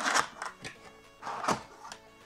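Cardboard box flap being pulled open: two bursts of cardboard rustling and tearing, the second ending in a sharp snap about one and a half seconds in. Soft background music runs underneath.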